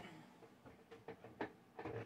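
A few faint, light clicks and knocks, spaced out over a quiet room.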